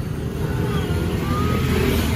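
Motorbike engines and street traffic making a steady low rumble.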